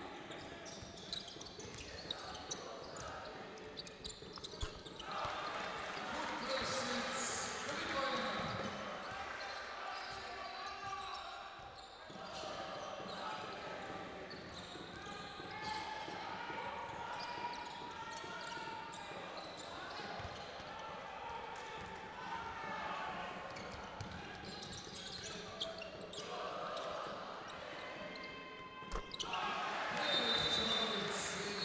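Basketball bouncing on a hardwood court during live play in a large hall, with players' and crowd voices around it. Near the end the crowd gets suddenly louder as a three-pointer goes in.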